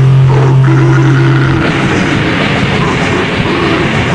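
Black/death metal recording from a cassette demo: a distorted guitar and bass hold a low droning note, which gives way about one and a half seconds in to dense riffing.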